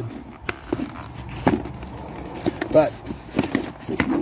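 A cardboard box being handled and its lid flipped open, with a few short sharp clicks and taps of cardboard about a second apart.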